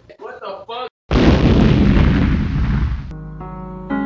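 A loud explosion with a deep rumble, starting suddenly about a second in and dying away over about two seconds; sustained music chords come in near the end.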